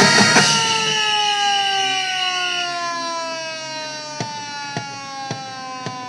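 Marching band music: the full band's loud drum-driven passage breaks off, leaving a sustained chord that slides slowly down in pitch as it fades. From about four seconds in, sharp percussion clicks come roughly twice a second.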